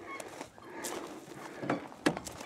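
A few faint footsteps crunching on gravel, with a louder single step or thud near the end.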